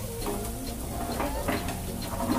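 A spatula scraping and pushing an egg around a frying pan, a few short scrapes about a third of a second, one second and one and a half seconds in.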